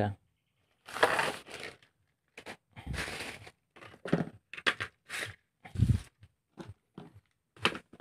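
Hands handling tools and their packaging: a hard plastic tool case being closed and moved, and blister-packed tools picked up and set down, heard as a run of short rustles, clicks and knocks, with two dull thumps about three and six seconds in.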